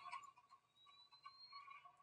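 Near silence: the movie trailer streaming to the laptop plays barely audibly, its volume just turned right down.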